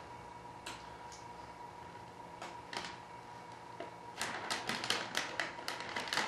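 Clear plastic vacuum-bag film crinkling as it is handled and pressed down over a wing mould, in scattered light crackles that grow busier in the last two seconds, over a faint steady hum.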